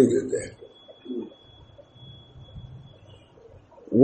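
A man's speaking voice for the first half second, then a pause in the talk. In the pause comes a short low sound about a second in, under a faint steady high-pitched whine.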